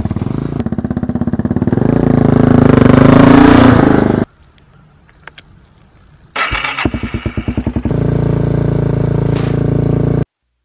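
ATV engine running as the four-wheeler comes down a loading ramp, rising in pitch and loudness over the first few seconds, then cutting off abruptly. After a short quiet gap with a few faint clicks, the engine is started from the handlebar start button, runs unevenly for a second or so, and settles into a steady idle.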